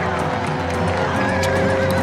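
A horse whinnying, a wavering call in the second half, over a sustained dramatic music score.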